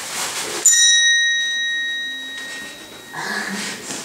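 A single bright chime struck once about half a second in, ringing out clearly and fading away over about two seconds. Faint rustling of movement follows near the end.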